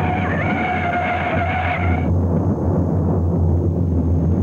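Car tyres screeching in a hard-braking skid for about two seconds, then cutting off sharply, over a steady low rumble.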